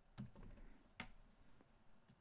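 A few faint keystrokes on a computer keyboard as a word is typed, the loudest about a second in.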